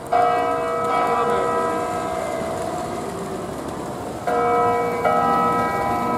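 Church bells from the parish's eight-bell set, cast by Ottolina in 1951 and tuned in B, ringing. Strokes fall at the start, about a second in, and twice more around four and five seconds, and each bell is left to ring on with a long hum.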